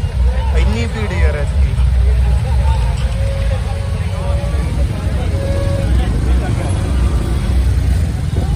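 Street noise of a traffic jam: vehicle engines and a heavy low rumble under the voices of a crowd on foot, with talk loudest in the first second or two.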